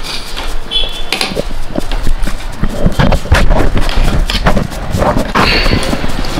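Metal spoon clinking and scraping against a plate of food in a run of irregular knocks.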